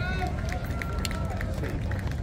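Chatter of a crowd of passers-by, several voices overlapping at a distance, over a steady low rumble.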